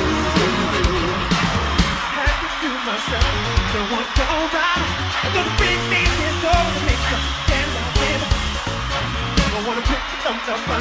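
Live pop concert music with a steady drum beat, over a crowd screaming.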